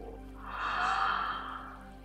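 A long, soft audible breath, a sigh-like rush of air from about half a second in that fades out by the end, over quiet background music with steady held tones.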